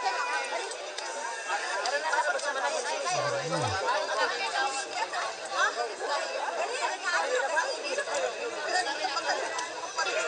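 Several people chattering and calling at once, their voices overlapping, heard through the playback of an old home-video tape.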